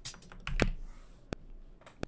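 Computer keyboard keys clicked a few times, each a short sharp tap, spaced about half a second apart.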